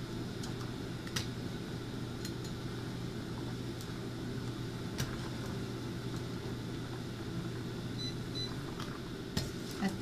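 A metal ladle stirring simmering soup in a metal pot, giving a few light clicks against the pot, over a steady low hum.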